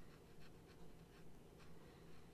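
Faint scratching of a Nemosine Singularity fountain pen's 0.6 mm stub nib on paper, written upside down (reverse writing) in a string of short strokes. The nib runs very dry and scratchy this way up.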